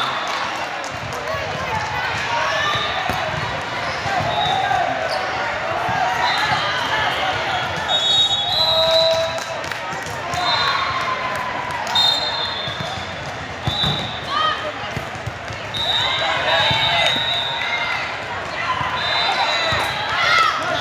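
Volleyball hall ambience: many overlapping voices of players and spectators, with sharp ball hits now and then and short high squeaks of shoes on the hardwood court.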